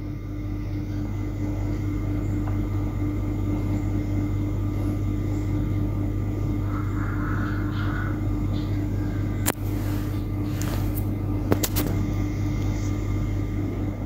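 Music for a Khmer dance playing over loudspeakers, heard under a steady low rumble. A few sharp clicks come near the end.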